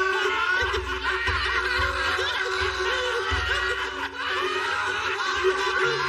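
A group of men laughing together over background music with a pulsing bass.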